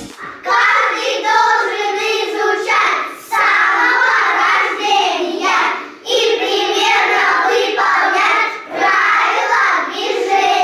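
A group of young children singing together in unison, in phrases of about three seconds with short breaks between them.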